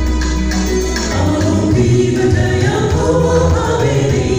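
A choir singing a Kinyarwanda gospel song over a steady bass accompaniment. The voices grow fuller about a second in.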